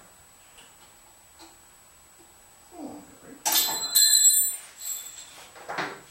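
A loud metallic clatter about three and a half seconds in, with a brief bright ring, after a low scrape and followed by a few softer knocks.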